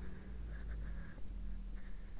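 Low, steady rumble of wind and handling on a handheld phone microphone while walking, with light scratchy scuffs.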